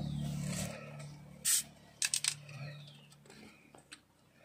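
A plastic bottle of fizzy lemon soda being handled and drunk from inside a car: a short sharp hiss about one and a half seconds in, then a few quick clicks, over a low steady hum that fades away.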